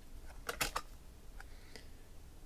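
A few light clicks and taps from hands handling a hard plastic card holder and card: a quick cluster about half a second in, then two fainter ticks.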